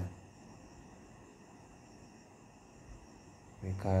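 A pause in a man's narration filled with faint, steady background noise and thin high-pitched tones. His speech comes back near the end.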